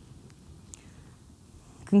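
Faint room tone with a couple of tiny ticks during a pause in speech; a woman's voice starts again right at the end.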